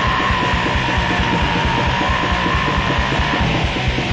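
Raw black metal: fast drumming under a wall of distorted guitar, with one high note held for about three and a half seconds before it drops away.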